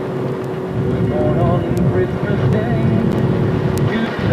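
Inside a car's cabin while driving on a snow-covered road: a steady engine and tyre rumble with a constant low hum, and faint voices over it.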